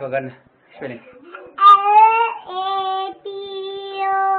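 A young child's voice: a few short vocal sounds, then from about one and a half seconds in, long, steady, high-pitched sung notes held one after another.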